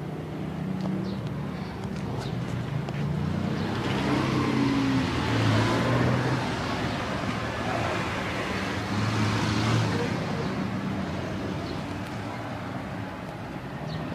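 Motor vehicle engine running close by amid street traffic, with a broad rush of road noise that swells from about four seconds in and peaks twice as traffic passes close, then fades.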